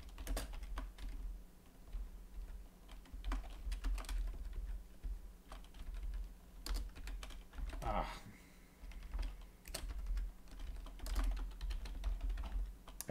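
Typing on a computer keyboard: irregular runs of keystrokes with short pauses, and a brief vocal sound from the typist about eight seconds in.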